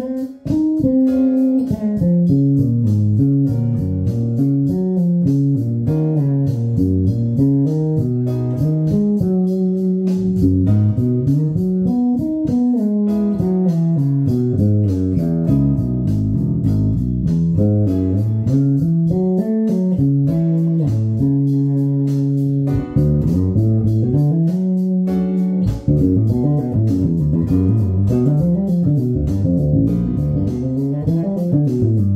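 Electric bass guitar played solo: pentatonic melodic lines, one note at a time, running up and down the scale and moving through all twelve keys. The playing is a steady stream of notes with two brief breaks in the second half.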